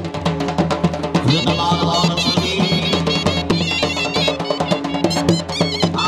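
Punjabi folk music for a horse dance: a dhol drum beaten fast and steadily under a wavering melody on a reed pipe.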